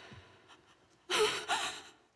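Two sharp, distressed gasps from a person, about a second in.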